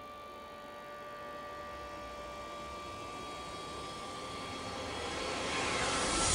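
A soft, steady hiss with a faint held tone, gradually swelling over the last few seconds into a louder, brighter rising whoosh: a transition effect in the dance's recorded backing track.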